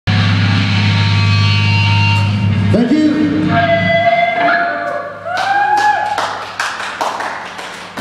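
A band's amplified electric guitar chord ringing out through the PA in a large hall and stopping about three seconds in. Then voices shout and whoop, with a run of sharp knocks near the end.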